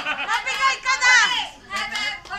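A group of children and adults shouting and calling out excitedly over one another, loudest about a second in.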